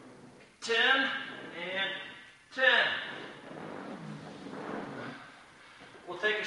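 A man's voice in short bursts, three brief utterances in the first half, then a fainter, steadier low vocal sound.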